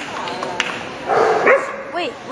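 A dog barks about a second in, over the chatter of a crowd in a large hall.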